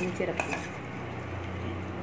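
Steel plates and cutlery clinking a few times in the first half-second as people eat, then only a low steady hum.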